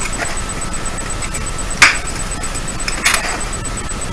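Pliers working at a small metal part on a wooden bench: one sharp click a little under two seconds in and a short scrape about three seconds in, over a steady background hiss.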